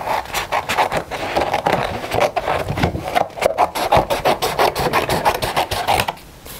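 Scissors cutting through a sheet of acrylic-painted smooth white card in a quick, steady run of snips and papery rasps.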